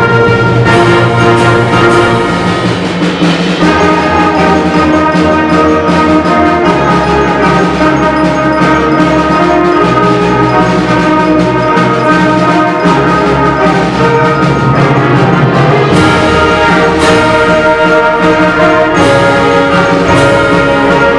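A high school concert band playing, brass and woodwinds holding full sustained chords that change every few seconds, with a few percussion strikes in the last few seconds.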